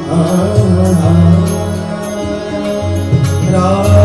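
Live bhajan music: tabla strokes keeping a steady beat over held harmonium and keyboard chords, with a singer's voice coming back in near the end.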